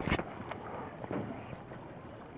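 Wind buffeting an action camera's microphone as a steady rush, with one loud knock at the very start, likely from the camera or rod being handled.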